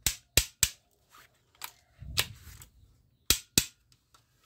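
Sharp plastic clicks and clacks from a camouflage toy assault rifle as its mechanism is worked by hand: about seven separate snaps at uneven intervals, some in quick pairs, with a duller handling thump about halfway through.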